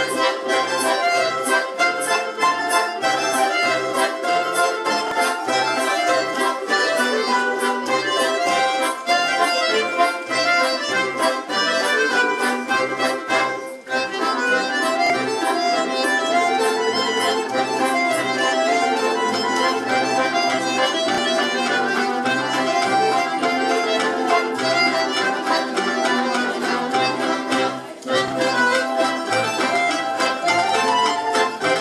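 Accordion playing the melody of a Belarusian folk dance over a Russian folk orchestra of domras and balalaikas plucking and strumming the accompaniment to a steady beat. The music dips briefly about halfway through and again near the end.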